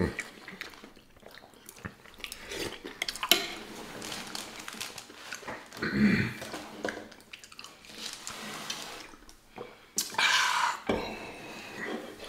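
Eating sounds at a table: metal forks clicking and scraping against plates and bowls, with close-up chewing. A short hummed murmur comes about six seconds in, and a louder, noisier stretch of eating about ten seconds in.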